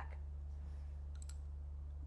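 Pause in speech: a steady low hum, with a few faint clicks a little over a second in.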